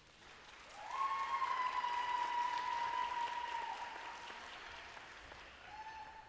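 Audience applauding and cheering at the end of a dance routine, the clapping swelling about a second in and then fading away. One long high-pitched cheer rides over the clapping, and a short second one comes near the end.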